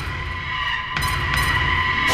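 Dramatic background music: a low pulsing drone under steady high held tones, slowly building in level.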